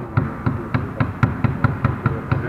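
Volleyballs being hit and bouncing on a wooden gym floor: a quick, irregular run of thuds, about a dozen in two seconds.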